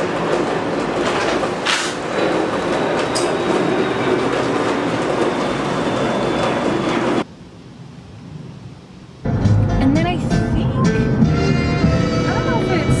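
A loud, steady rushing noise that cuts off suddenly about seven seconds in. After a short lull, music with a gliding voice starts about nine seconds in.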